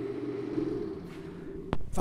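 BMW 420d's four-cylinder diesel engine idling, heard at its twin exhaust tips: a steady low hum that slowly fades, with one sharp click near the end.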